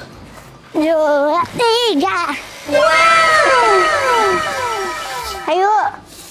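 Children's voices call out briefly. Then comes a comic sound effect of several overlapping tones, each sliding downward in pitch, lasting about two and a half seconds. A short voice is heard again near the end.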